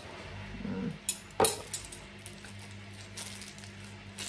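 Metal cutlery clinking as pieces from a new set are handled and unwrapped, with one sharp clink about a second and a half in and a few lighter ones.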